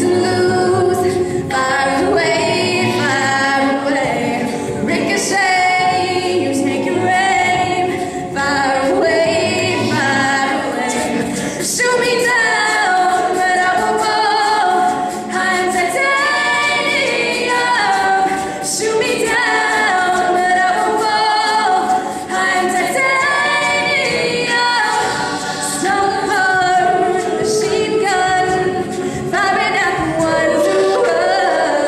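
Mixed-voice a cappella group singing a contemporary arrangement with many parts, accompanied by beatboxed vocal percussion.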